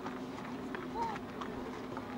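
Faint voices of people nearby with scattered light knocks and a steady low hum; a short high chirp about a second in.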